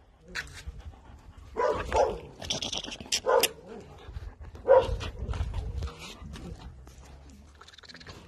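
Dogs giving several short barks, the loudest about five seconds in.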